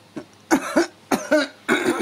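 A woman coughing several times in quick succession, short hoarse coughs clearing her throat, the last running into a falling voiced sound near the end.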